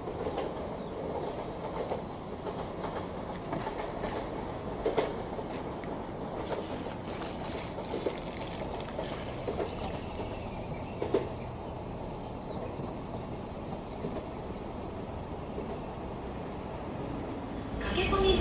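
Distant E655 "Nagomi" train pulling away from a station: a steady low rumble with a few faint clicks scattered through it.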